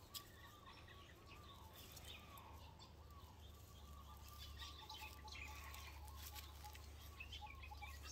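Faint outdoor ambience: distant birds calling in a run of short rising-and-falling notes over a low steady hum.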